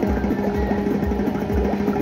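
Gold Fish slot machine playing its bonus-round music: a steady beat under a held melody line with short rising notes.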